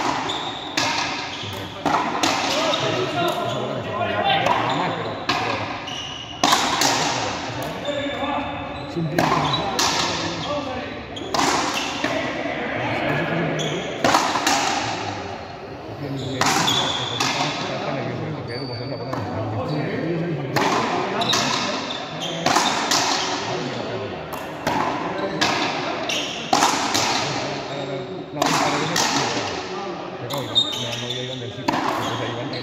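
Frontenis rally: a hard rubber ball struck with stringed rackets and smacking against the concrete front wall and floor, a quick run of sharp cracks about every half-second to second and a half, each ringing on in the large covered court.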